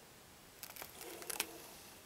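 Handheld video camera handling noise as the shot zooms out: a few light clicks and a short rustle, starting about half a second in, over faint room tone.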